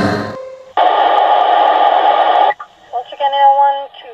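Music fades out, then about two seconds of two-way radio static, then a dispatcher's voice over the radio, thin and narrow-band.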